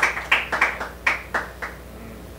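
Hand clapping from a small audience, dying away: a few sharp claps about three a second that thin out and stop shortly before the end.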